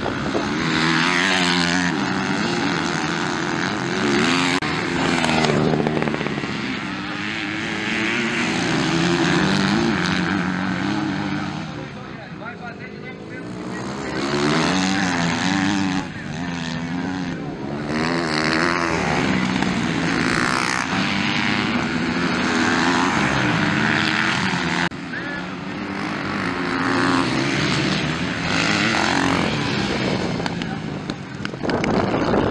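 Several motocross bike engines racing, their pitch repeatedly climbing and dropping as the riders accelerate and shift. The sound dips for a couple of seconds near the middle.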